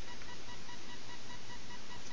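Steady hiss with a faint high-pitched electrical whine, the recording's own background noise, and a small tick at the very start.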